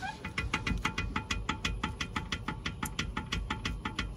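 Background music with a quick, even ticking beat, about six or seven clicks a second.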